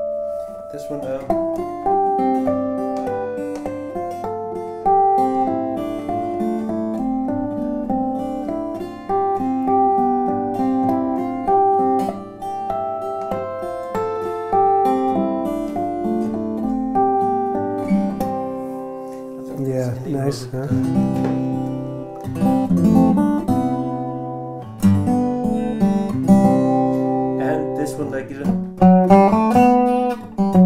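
Lowden acoustic guitar played fingerstyle: a picked melody over bass notes. About twenty seconds in there is a passage of heavy bass notes and struck, percussive hits, and more hard-struck notes near the end.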